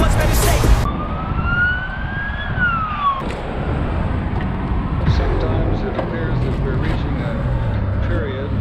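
A siren's single wail, rising slowly for about a second and a half and then dropping quickly, over a steady low rumble of road traffic. Music cuts off abruptly under a second in.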